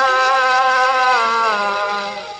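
A 78 rpm gramophone record of a male Sindhi singer, played on a wind-up portable gramophone. The singer holds one long, slightly wavering note that falls away about three-quarters of the way through, over a steady accompanying drone.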